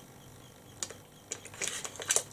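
A few quiet, sharp clicks: one a little under a second in, then several more closer together toward the end.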